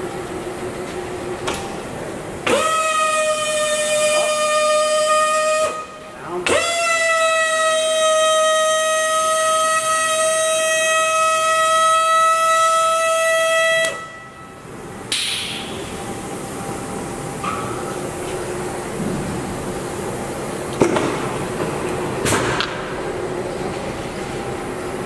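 Motorized ram adjustment of a 110-ton Niagara OBI press running in two runs: a steady, high-pitched electric-motor and gear whine that starts sharply a few seconds in, stops after about three seconds, then runs again for about seven seconds and cuts off. A steady lower hum from the press continues throughout.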